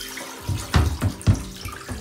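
Plastic Big Blue filter housing bumping and rubbing against a bathtub as it is handled, with several dull knocks about a quarter second apart.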